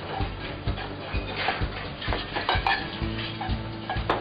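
Busy commercial kitchen: plates and cutlery clinking and knocking in scattered sharp strikes, over music with steady low notes and a regular beat.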